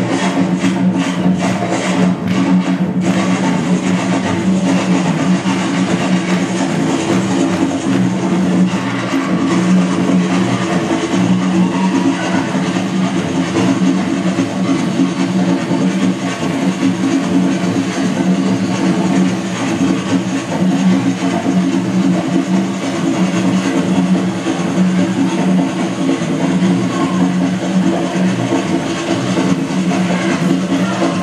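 Music with hand drumming on a tall conga-style drum. Sharp strikes stand out over the first three seconds, over a steady, sustained low backing that carries on throughout.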